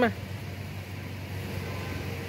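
Road traffic: a steady hum of passing vehicles.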